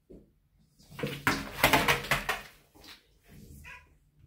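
A dog and a kitten tussling: a burst of scrabbling and scuffling lasting about a second and a half, then a short, high-pitched animal cry near the end.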